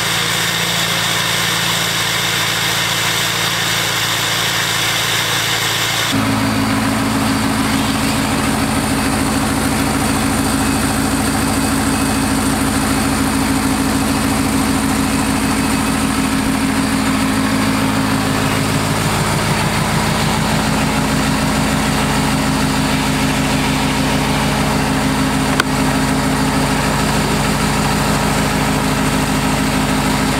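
Ford F-350 Super Duty pickup's engine idling steadily. The sound changes abruptly about six seconds in, then carries on as an even idle.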